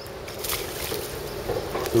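Hooked largemouth bass splashing and thrashing at the water's surface close to the bank, with water sloshing.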